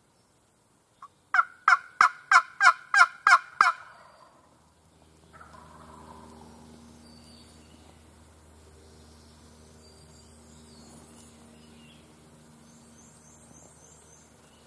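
A series of about eight loud turkey yelps, about three a second, starting about a second in, each note breaking from a higher to a lower pitch. After that only faint woodland background with distant bird chirps.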